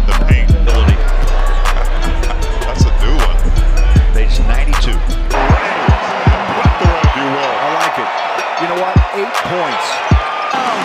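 Music with a heavy bass beat that cuts off about five seconds in. Basketball game sound follows: steady arena crowd noise, sneakers squeaking on the hardwood court and the ball bouncing.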